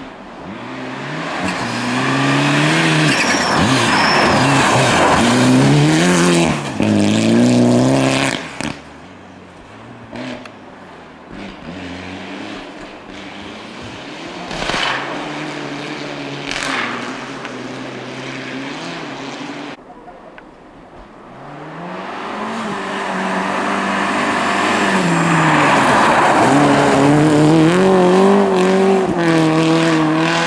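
Rally car engines at hard throttle on a snowy gravel stage, pitch climbing and dropping with gear changes. One car passes close and loud in the first nine seconds, a quieter engine carries on through the middle, and a second car approaches loudly in the last third, sliding through the snow.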